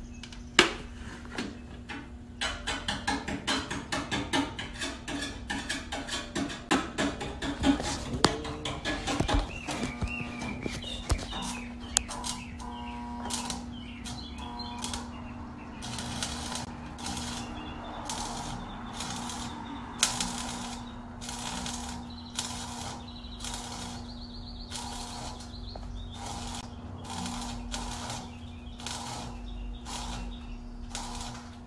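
Stick (arc) welder crackling as a rod is run on a thin, rusty car floor pan: irregular crackle in the first part, then short bursts about once a second as the arc is struck and broken, over a steady low hum.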